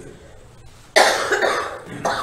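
A man coughs, sudden and loud, about a second in.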